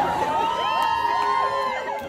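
Concert audience cheering, with many high voices screaming and whooping at once; it eases off near the end.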